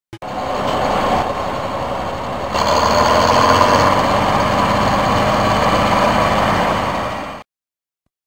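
Bizon Z056 combine harvester running steadily, heard close up on the machine. The sound grows louder about two and a half seconds in and cuts off suddenly shortly before the end.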